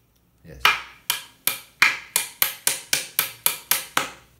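A hammer striking a pine bed-frame board fitted with wooden dowels, a run of about thirteen sharp blows that starts about half a second in and quickens from about two blows a second to about five.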